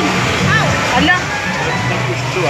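People's voices talking over music.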